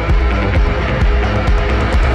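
Rock band playing an instrumental passage: a drum kit keeps a steady beat, with a kick drum about twice a second and hi-hat ticks between, over bass and electric guitar. There is no singing.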